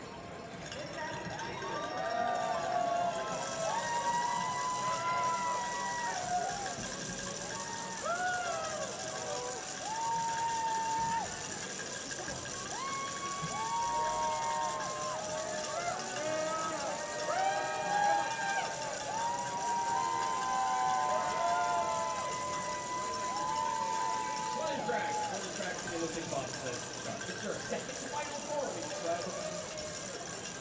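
Bobsleigh sliding down the ice track, heard from on board: a steady high hiss of the runners on the ice starts a few seconds in. Over it come many overlapping, drawn-out shouting voices.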